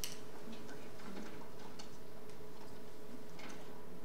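A sharp click of a handheld microphone being handled as it is passed to another person, then a few light scattered ticks over a steady hum from the sound system.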